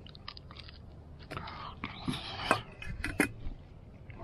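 A man biting into and chewing a hot pie-iron pizza pocket with a crisp toasted crust, heard as irregular short crunches and mouth clicks.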